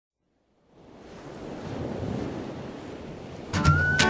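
Sound of ocean surf fading in from silence, then about three and a half seconds in a song's intro enters with strummed guitar chords and a held high note.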